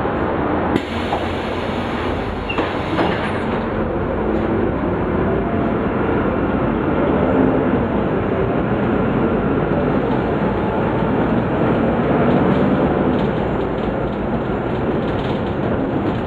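Cabin noise of a Caio Mondego LA articulated bus on a Volvo B9 SALF chassis under way: its six-cylinder diesel engine drones steadily under the road rumble, loud and continuous.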